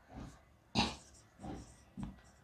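Faint sounds of a marker writing on a whiteboard, with a short breath through the nose about a second in.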